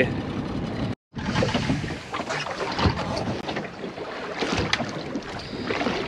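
Wind on the microphone and water against the hull of a small boat, with scattered knocks. The sound cuts out briefly about a second in.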